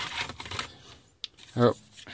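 A second-hard-drive caddy being slid into a laptop's optical drive bay: a short scraping, rustling sound, then a single light click about a second in.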